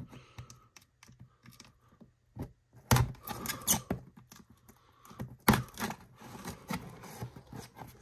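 A cardboard mailer box being cut open with a small blade: scattered clicks, taps and scrapes, the louder ones a few seconds in and again past the middle.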